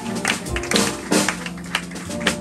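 Live jazz from a piano trio: Yamaha grand piano, upright double bass and drum kit playing together, the drums keeping a busy pattern of cymbal and drum strokes.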